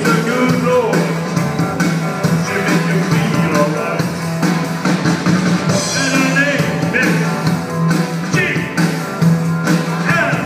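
Rock band playing live with a singer, over a steady drum beat and a held bass line.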